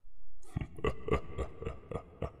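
A run of light knocks or taps, about three or four a second, starting about half a second in after a brief low hum, with a slight ringing to each knock in a small room.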